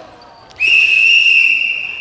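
A long blast on a whistle, one steady high tone starting about half a second in and held for over a second, the kind blown to end a basketball practice.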